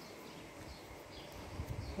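Faint outdoor background: a low, uneven rumble with a few faint, short high chirps scattered through it.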